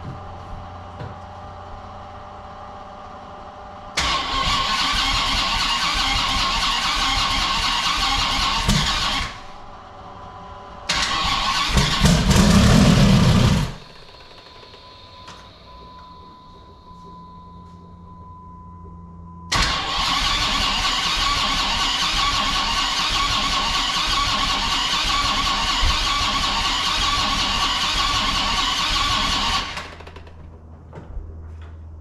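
Twin-turbo Viper V10 turned over on its starter without firing, in three cranks: about five seconds from four seconds in, a shorter and heavier one around eleven seconds, and a long one of about ten seconds from twenty seconds in. It is cranked with the fuel pump disconnected to pump oil through and build oil pressure. A low hum fills the gaps, and a faint high tone is heard between the second and third cranks.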